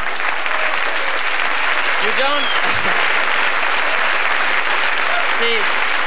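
Audience applauding, a steady wash of clapping, with a few voices rising above it about two seconds in and again near the end.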